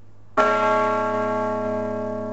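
A single church bell struck once about a third of a second in, then ringing on with many clear overtones and slowly fading, over a faint low steady hum.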